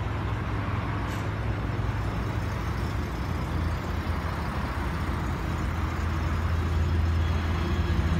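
Steady low rumble of idling motor-vehicle engines, growing louder near the end.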